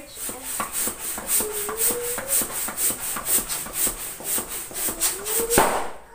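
Hand balloon pump worked in quick, even strokes, about three a second, each stroke a rubbing rush of air as a latex balloon is blown up. A thin squeak rises in pitch twice, and a short, louder rush comes near the end.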